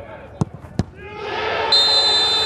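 A football struck hard from the penalty spot, then a second sharp thud a moment later as the ball meets the diving goalkeeper. The crowd's shouting swells after the save, and a high, shrill steady tone starts near the end.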